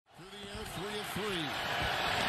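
TV football broadcast audio fading in from silence: steady stadium crowd noise rising in level, with a man's voice briefly saying a few syllables.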